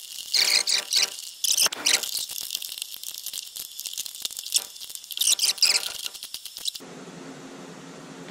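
Small screw being turned in by hand to fasten a tweeter in its plastic dashboard mount: a rapid run of small clicks with short squeaks. The clicking stops about a second before the end.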